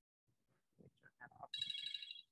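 A short electronic phone ringtone, a chord of several steady high tones, sounding about one and a half seconds in and lasting under a second, with a faint murmur before it.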